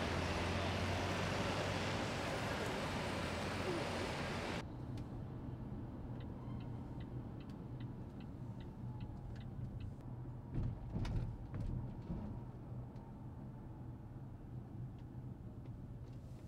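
Street traffic noise as an LEVC TX electric taxi drives past. About four and a half seconds in, this cuts to the quieter sound inside the moving cab: a low road rumble with a few faint ticks and knocks, and no diesel engine heard.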